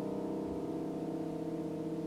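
Background music: a held piano chord slowly fading.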